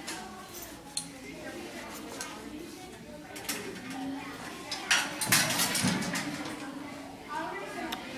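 Indistinct voices chattering, with clinks and clatter of tableware. A louder noisy clatter comes about five seconds in.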